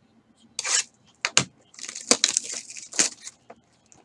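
Packaging of a 2018 Inception baseball card box being torn open by hand: a short rip, two sharp snaps, then a longer stretch of tearing and crinkling.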